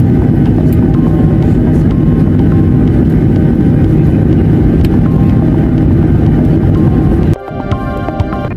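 Steady loud rumble of a jet airliner's cabin as the plane taxis after landing. Near the end it cuts off suddenly and electronic music starts.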